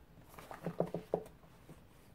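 Paperback books being handled on a bookshelf: a quick cluster of light knocks and rubs, about half a second to a second in, as one book is slid back into the row and the next is pulled out.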